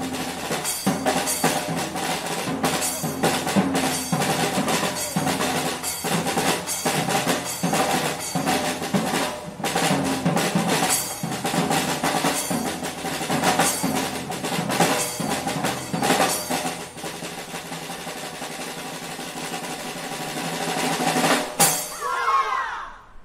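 Drums played in a steady, driving rhythm, giving way near the end to a softer, continuous roll that builds to one loud closing hit.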